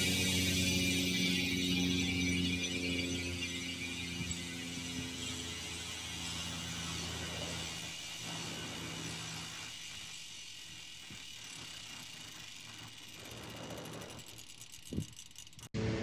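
Industry Nine Hydra six-pawl rear hub freewheeling as the wheel spins free. Its freehub makes a high-pitched ratcheting buzz that falls steadily in pitch and fades as the wheel slows. There is a single thump near the end.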